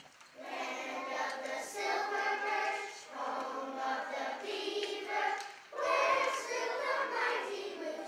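A children's choir singing together, starting about half a second in, in phrases with brief breaks between them.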